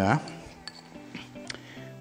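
A paintbrush tapping against a small bowl of paint, two light clinks about a second apart, over faint background music.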